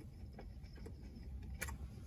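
Faint eating sounds while chewing fried chicken: scattered small mouth clicks and smacks, with one sharper click near the end, over a low steady rumble.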